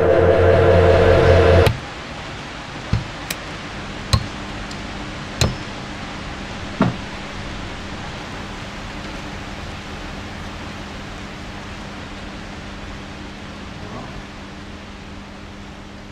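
A loud low droning tone cuts off suddenly about two seconds in. A handful of sharp, irregular clicks follow over the next few seconds, then a steady quiet hiss of room tone with a faint hum.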